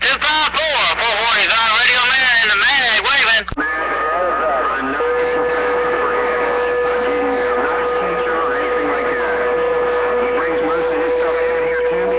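CB radio receiving long-distance skip signals: a distorted, warbling voice for about the first three and a half seconds, cut off suddenly, then a jumble of faint overlapping voices and static under steady whistling tones from carriers beating against each other on the crowded channel.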